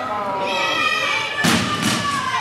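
Dog-agility teeter board banging down onto the ground as the dog rides it over the pivot, about one and a half seconds in, followed by a second, smaller knock a moment later.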